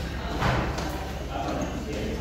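People speaking over a steady low hum, with a brief louder burst about half a second in.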